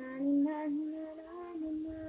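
A high voice singing one long, wordless phrase, the pitch edging gently upward as it is held.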